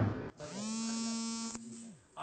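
A steady electric buzz lasting about a second and a half, rising slightly in pitch as it starts up, with a single click near its end.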